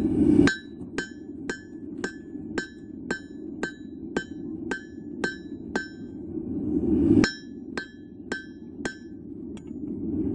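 Blacksmith's hammer forging steel on an anvil, striking about twice a second, each blow ringing; the blows pause briefly after about six seconds. A rushing noise runs underneath, swelling and cutting off suddenly just after the start and again about seven seconds in.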